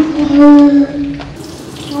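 A woman singing one long held note that fades after about a second.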